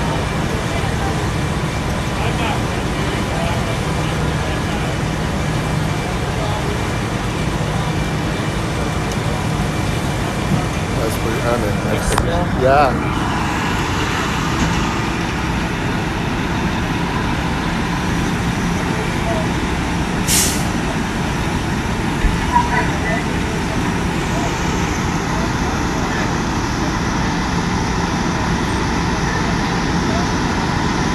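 Fire trucks' diesel engines running steadily with a constant low hum as their pumps feed the aerial ladder's water stream. A short, sharp hiss comes about twenty seconds in.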